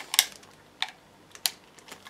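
Three sharp clicks about half a second apart as a hobby knife is worked against a plastic-wrapped electronic box, with quiet between.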